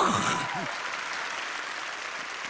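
Studio audience applauding steadily, with a man's exclamation trailing off in the first half second.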